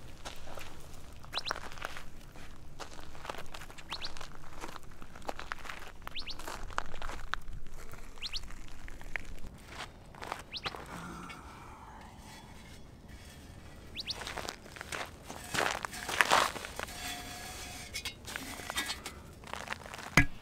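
Footsteps and scuffing on dry dirt and ash, with gloved handling of a freshly fired clay pot and a burst of handling noise about three-quarters of the way through. Occasional short, high bird chirps come in the first half.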